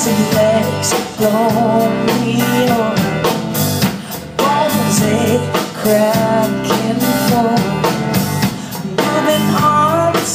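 Live rock band playing a song: drum kit, electric bass and electric guitar, with a wavering lead melody line over a steady beat.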